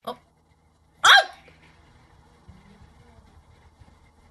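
A short, sharp vocal cry about a second in, its pitch falling quickly, after a brief sound at the very start; then only faint low background sound.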